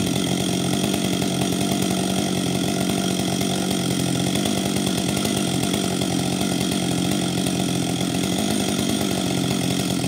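Husqvarna 562 XP two-stroke chainsaw idling steadily, not cutting.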